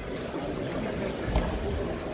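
Sports hall ambience: a steady low rumble of background noise, with one short thump a little past halfway through.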